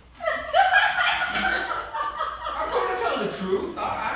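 A person laughing and chuckling without words.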